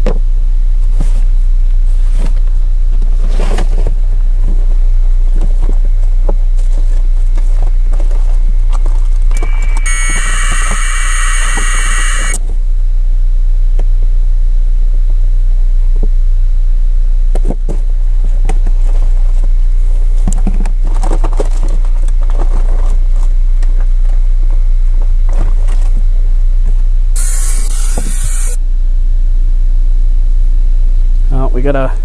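A steady low rumble with scattered clicks and knocks, broken twice by a harsh burst of high-pitched hissing noise lasting a few seconds, about ten seconds in and again near the end.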